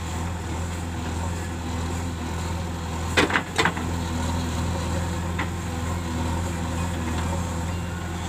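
JCB 3DX backhoe loader's diesel engine running steadily under load as the backhoe digs soil. Two sharp knocks sound a little over three seconds in, about half a second apart.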